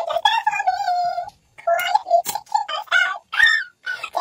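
A young woman bawling: high, wavering crying wails broken by short gasping pauses.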